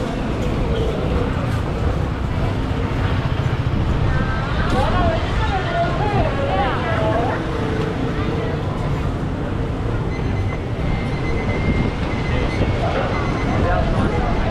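Busy street ambience: a steady traffic rumble with passers-by talking over it, one voice standing out around the middle. A faint steady high tone comes in over the last few seconds.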